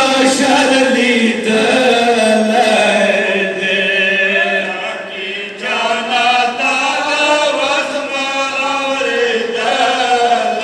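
Several men chanting a Pashto noha (mourning lament) together into microphones, a slow melodic line with drawn-out notes. There is a short break about halfway through before the next phrase begins.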